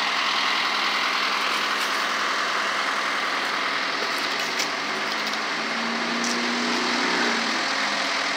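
Heavy road-work vehicles' diesel engines idling steadily, a backhoe and a dump truck close by.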